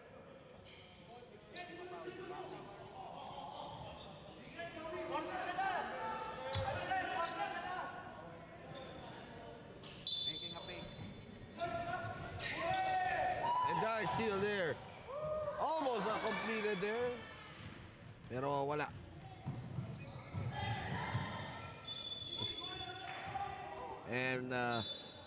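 Basketball game sounds on an indoor hardwood court: the ball bouncing as players dribble it, with players' voices calling out, louder in the second half.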